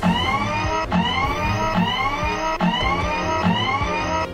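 A motor whine rising in pitch, winding up five times a little under a second apart, as the sound effect for a toy drill vehicle, with background music underneath.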